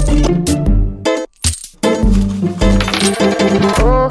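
Podcast intro theme music with a steady low beat and short clinking, coin-like metallic hits. It breaks off briefly a little over a second in.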